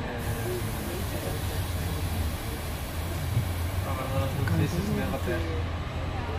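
Inside a passenger train slowing down: steady low rumble of the carriage, with a high hiss that starts at the outset and cuts off about five and a half seconds in.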